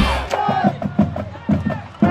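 Marching band in the stands playing: a run of drum hits with brass notes, over crowd noise.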